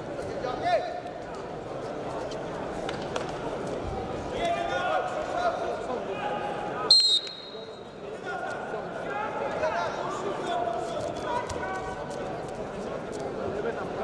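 A referee's whistle gives one short, sharp blast about seven seconds in, restarting a freestyle wrestling bout. Around it, voices call out and murmur in a large hall, with scattered knocks from the mat.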